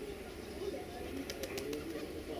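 Quiet railway station ambience: a low steady rumble with brief muffled low sounds scattered through it, and a quick run of light clicks about one and a half seconds in.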